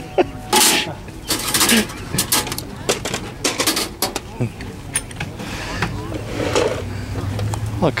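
Voices of people talking nearby at an outdoor market, broken by several short, loud, hissy bursts close to the microphone in the first half.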